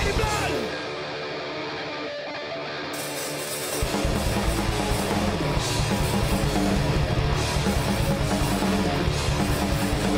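Live heavy metal band. The singing stops at the start and the band thins to a quieter passage without its low end for about three seconds. The full band with distorted electric guitar comes back in about four seconds in; the lead part is played by two people on one electric guitar.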